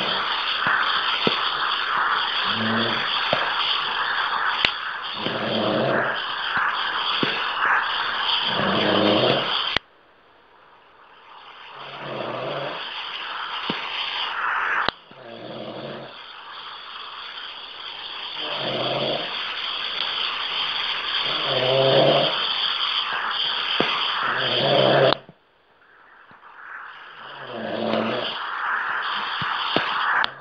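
Snoring over an open phone line: a throaty breath about every three seconds under a steady line hiss. The line cuts out suddenly twice, about ten seconds in and again near the end, and fades back in each time.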